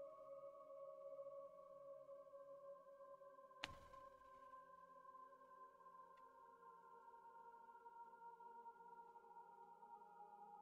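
Near silence with a faint steady drone of several held tones, and one soft click about three and a half seconds in.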